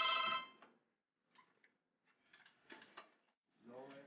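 A steady ringing electronic tone of several pitches, like a telephone ringing, cuts off about half a second in. After that it is near quiet, with a few faint soft clicks and rustles in the middle.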